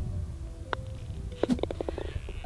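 A golf putter taps a ball, then the ball drops into the hole's cup with a short quick rattle, over a low wind rumble.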